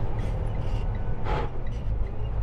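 Steady low engine and road rumble heard inside a semi truck's cab while driving, with a brief hiss about a second and a half in.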